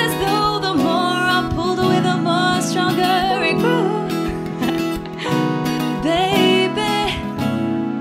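R&B ballad performed live: a woman singing, her voice bending and sliding between notes, over acoustic guitar and keyboard.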